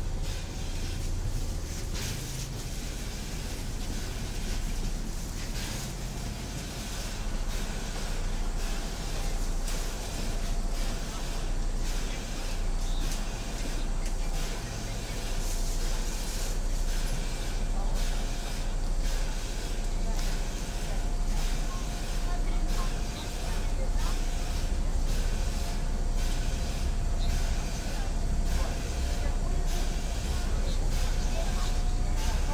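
Inside a Rusich (81-740/741) metro train: a steady low rumble and hiss as the car slows into a station and then stands with its doors open, with a faint steady tone in the second half.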